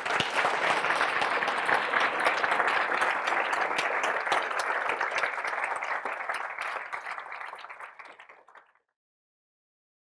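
Lecture-hall audience applauding, a dense steady patter of many hands clapping that fades out about nine seconds in.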